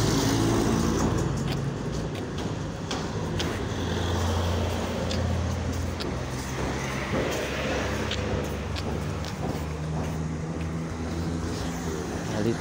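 Street traffic: car engines running and passing close by with a steady low hum that swells near the start and again around the middle, and a few light clicks scattered through.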